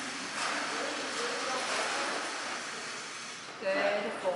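Faint, indistinct voices over a steady hiss of room noise. Near the end a voice calls out much louder.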